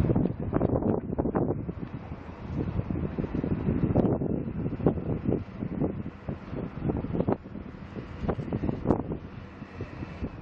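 Wind buffeting the microphone outdoors: a gusting low rumble that swells and drops unevenly.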